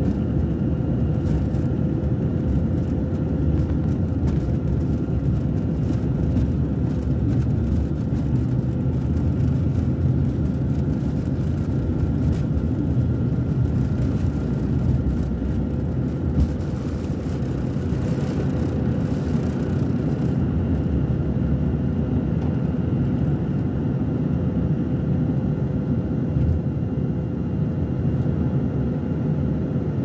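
Inside the cabin of a jet airliner at takeoff power: the engines give a loud, steady rumble with a thin steady tone. Rattling and knocks from the runway come through until about two-thirds of the way in, then stop as the plane lifts off.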